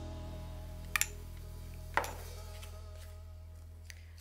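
Soft background music, with two sharp clinks about a second apart as a metal spoon and a glass bowl of coulis are handled and set down.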